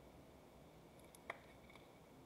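Near silence: room tone, with a few faint clicks of trading cards being handled on the table a little past halfway.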